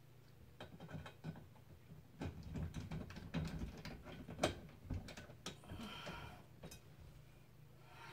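Hands working a bulb into a ceiling light fixture: faint, irregular clicks, taps and light scrapes of the bulb and fixture parts, with a slightly sharper tap about halfway through and a short scraping rustle soon after.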